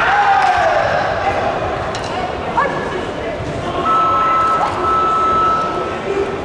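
Busy sports-hall ambience: voices, shouts and calls carrying across several karate competition mats in a large echoing hall. A long steady high tone sounds over the last two seconds.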